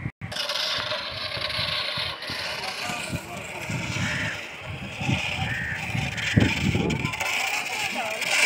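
Outdoor ambience: people's voices in the background over a steady hiss, with irregular low thumps on the phone's microphone. A brief dropout comes at the very start.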